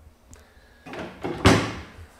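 Kitchen wall cabinet's lift-up door being shut, ending in a single knock about one and a half seconds in.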